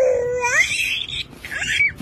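Baby vocalizing: a held note that climbs into a high-pitched squeal, then a second short squeal near the end.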